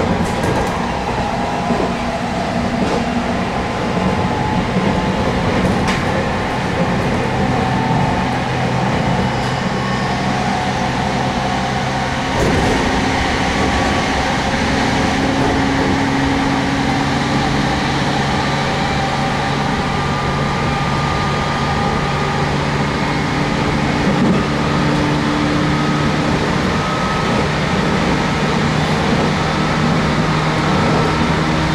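Inside the cabin of a JR Kyushu 813 series electric train at speed: steady rumble of wheels on rail, with a low motor hum that steps up in pitch a few times as the train gathers speed.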